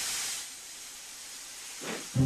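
Hiss of escaping steam, a sound effect for a steam engine letting off steam. It is louder for the first half-second, then settles to a steady, quieter hiss.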